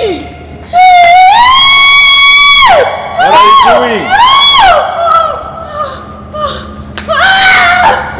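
A woman wailing in a high voice. One long cry rises and is held for about two seconds, then comes a string of short cries that rise and fall, and another loud cry near the end.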